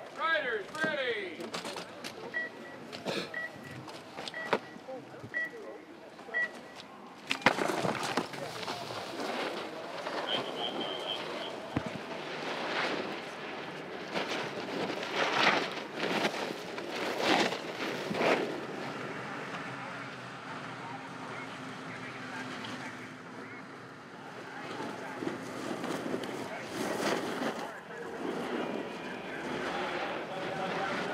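Race start-gate countdown: five short high beeps about a second apart, then a sharp clack as the riders leave the gate. After that, snowboard edges scrape and swoosh on hard-packed snow as two riders carve through the slalom gates, with voices in the background.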